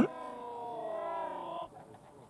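A held synthesized tone, several pitches sounding together and drifting slightly, cutting off about one and a half seconds in.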